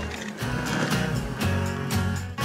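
Background music with a steady beat, swelling in about half a second in.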